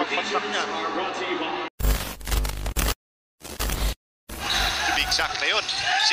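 Televised basketball game sound with voices breaks off about two seconds in for two short bursts of loud, bass-heavy static-like noise separated by dead silence, an edited transition between clips. The broadcast sound with voices resumes after about four seconds.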